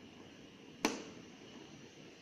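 Hand screwdriver driving a screw into a plastic battery-compartment cover on an ECG machine's casing: quiet handling with one sharp click a little under a second in.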